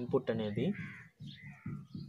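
A man speaking, with birds calling faintly in the background.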